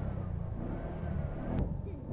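Auto-rickshaw (keke) engine running with a steady low drone, faint voices behind it.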